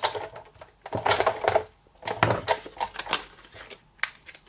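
Hand-cranked Sizzix Big Shot die-cutting machine pressing a cutting-plate sandwich with a Framelits die through its rollers, crackling and clicking in three spells with short pauses as the handle is turned. The cracking is the normal sound of the machine's roller pressure.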